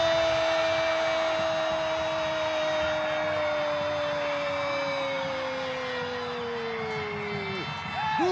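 A Brazilian football narrator's long drawn-out goal cry, the "gooool" held as one unbroken call for about nine seconds. Its pitch sinks slowly and it breaks off shortly before the end.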